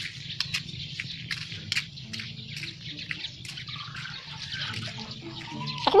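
Footsteps on a wet dirt-and-gravel road: a string of short, irregular clicks over a faint low rumble.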